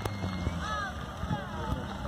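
Voices talking near the microphone over the low, steady hum of a distant car engine, with a sharp click right at the start.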